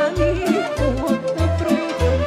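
Live folk dance music led by a bass drum with a cymbal mounted on top: the drum beats a steady pulse, about one thump every 0.6 seconds, with quick cymbal strikes between the beats and a wavering melody line over them.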